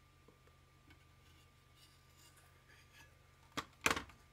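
Yellow rotary cutter rolling faintly through fabric on a tumbler, then two sharp knocks close together near the end as the plastic cutter is set down on the cutting mat.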